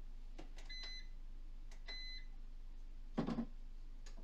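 Two short electronic beeps from a countertop kitchen appliance, about a second apart, followed a little after three seconds in by a brief clunk of something set down on the counter.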